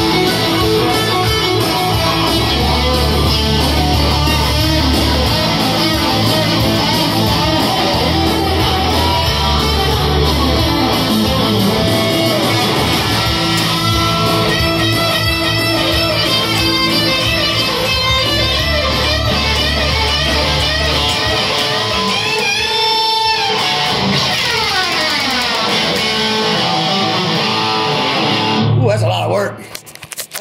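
Stratocaster electric guitar played through an amplifier, running lead lines with sliding pitch glides about three-quarters of the way through. The playing stops shortly before the end, and handling noise follows.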